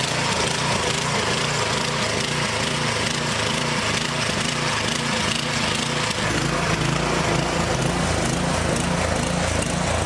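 Small gas-engine garden tiller running as its tines churn soil, the engine note wavering up and down with the load. About six seconds in, the low rumble grows heavier.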